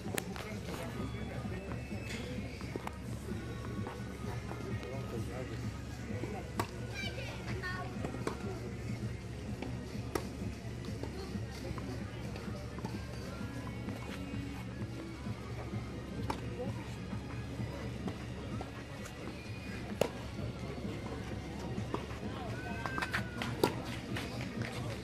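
Tennis balls struck by rackets in a rally on a clay court: a few sharp hits several seconds apart. Voices and music carry on in the background.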